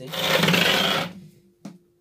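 Wooden speaker cabinet scraping across a concrete floor as it is turned around: one rough, rasping scrape lasting about a second, then a light knock.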